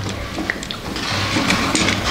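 A plastic transforming robot toy being handled, its arms and legs moved into place with a few small, faint clicks.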